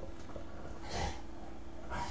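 A person drawing a slow inhale through the mouthpiece of an Eleaf iStick vape running at 12 watts: a soft, airy breath with a brief stronger pull about a second in, over a faint steady hum.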